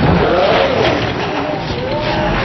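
Film-trailer audio slowed far down: deep, drawn-out voices whose pitch glides up and down in long slow arcs over a dense, noisy din.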